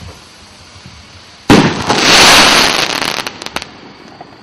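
Firework rocket bursting overhead with a sudden loud bang about a second and a half in, followed by about two seconds of crackling hiss that ends in a few sharp pops.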